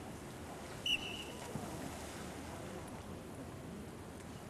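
A dolphin trainer's whistle gives one short blast about a second in, a single steady high tone lasting about half a second, over a low steady background hiss.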